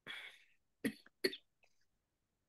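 A person coughing over a video call: a breathy hiss, then two short, sharp coughs in quick succession.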